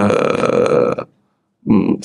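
A man's drawn-out hesitation sound, 'aaah… uh', held for about a second and then breaking off.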